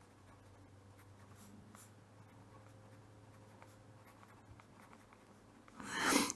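A pen writing on paper: faint, short scratching strokes, with a faint low hum underneath.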